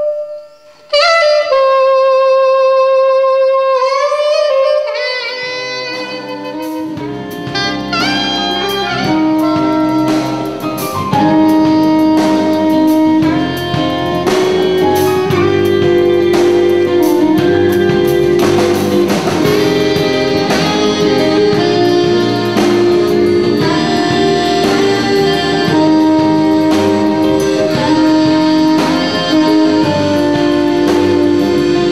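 Soprano saxophone playing a slow melody in long held notes, alone at first; about five seconds in a band with bass, drums and accordion comes in under it.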